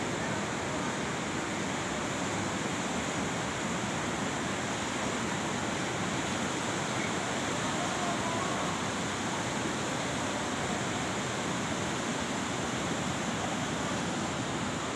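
Steady rushing of a fast mountain river, the Bhagirathi, running over rapids.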